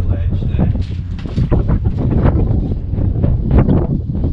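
Wind buffeting an outdoor camera microphone: a loud, uneven low rumble that rises and falls in gusts.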